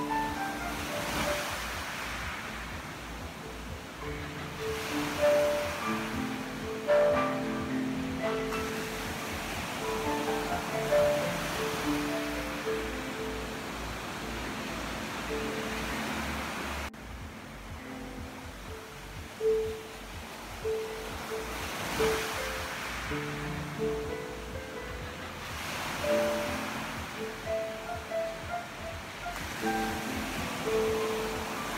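Slow solo piano improvisation, single notes and small chords, over ocean waves washing onto a beach. The surf swells and fades every few seconds, with a brief dip in the sound just past halfway.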